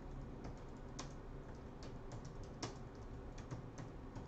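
Faint, irregular typing on a computer keyboard, about a dozen key clicks unevenly spaced.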